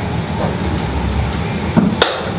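A steady low rumble, heaviest in the bass, with a brief knock near the end.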